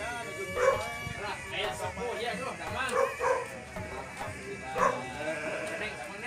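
Garut sheep bleating several times in short calls about a second apart, over background music and voices.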